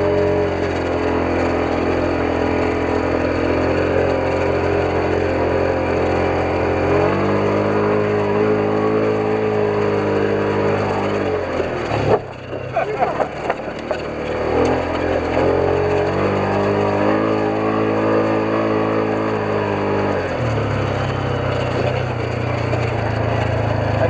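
Engine of a Polaris side-by-side running under way, its note rising and falling with the throttle. It eases off sharply about halfway through, then picks up again and settles to a lower, steady note near the end.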